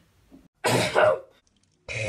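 A person giving a throaty cough, one loud rough burst with two pushes, from about half a second in to just past one second. Near the end another short, loud vocal noise starts.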